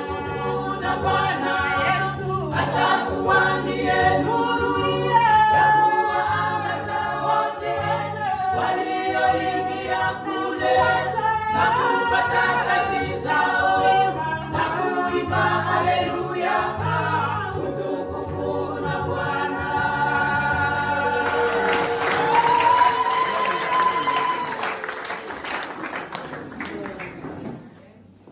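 Women's chorale singing a Swahili gospel song a cappella in harmony, with a steady low pulse under the voices. About five seconds before the end the song gives way to applause, with one voice holding a long, sliding cry over it.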